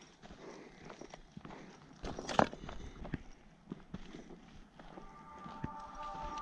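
Footsteps of a hiker walking on a dry dirt track strewn with twigs and leaves: irregular soft crunches, with one sharper crunch a little before halfway. Music fades in near the end.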